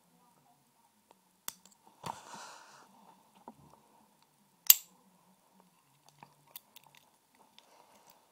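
A metal lock pick handled and worked into a Master Lock padlock's keyway: scattered small clicks and scrapes, a short rustle about two seconds in, and one sharp click, the loudest sound, just before five seconds.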